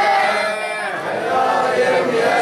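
Many voices chanting together in a jalwa, a Bahraini celebratory religious song, sung as a group refrain.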